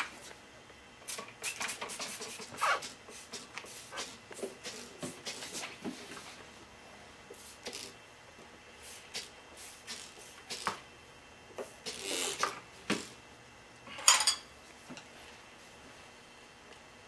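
Handling noises while lubricating a motorcycle tire bead: scattered light clicks and clinks of the wheel and metal tools, with a few short sprays of Ru-Glyde tire-mounting lubricant from a spray bottle, the longest two near the end.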